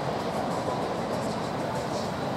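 Steady roar of ocean surf breaking, an even rushing noise with no distinct events.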